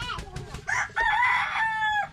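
Rooster crowing: one loud, long call that starts under a second in and is held, dipping slightly in pitch as it ends.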